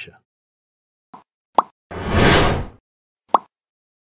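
Logo-animation sound effects: three short pops, at about one, one and a half and three and a half seconds in, with one whoosh about two seconds in that is the loudest sound.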